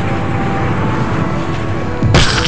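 A steady low rumble, a sound effect for the runaway tank's destruction, holding level between two crash hits.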